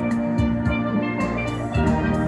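Steel drum band playing live: steel pans ringing out sustained notes over a steady drum beat.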